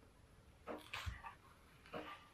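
Water dripping from a kitchen faucet that is not closed tightly: a few separate drops, about a second in and again at the end, with soft handling of a banana peel in between.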